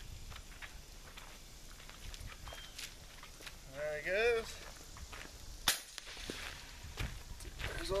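Footsteps on gravel as a man walks up. A short vocal sound comes about four seconds in, and a single sharp click, the loudest sound, a little before six seconds.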